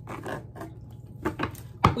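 Tarot cards being handled and laid down on a cloth-covered table: a few soft taps and slides, the sharpest one just before the end.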